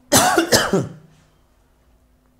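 A man coughs twice in quick succession into his hand, two loud coughs together lasting under a second, near the start.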